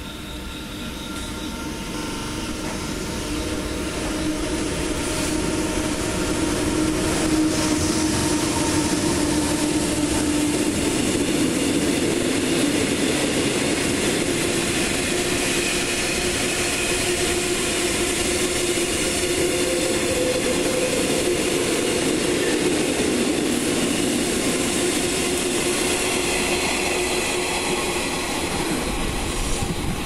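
A freight train passing through a station, hauled by an EH200 electric locomotive and made up of tank wagons. The sound grows over the first several seconds as the locomotive approaches, with a hum strongest about seven to eleven seconds in. Then a steady run of wheels on rails follows as the tank wagons roll by.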